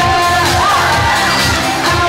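Audience cheering and shouting, with a whoop about half a second in, over an upbeat pop song playing through the hall's speakers.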